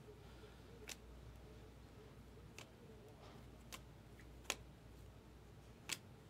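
Near silence with a low hum and a few faint, short clicks, spaced about a second apart, from stiff chrome trading cards being handled, sorted and set down.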